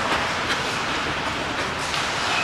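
Bandy skate blades scraping and hissing on the ice, with a sharp knock about half a second in.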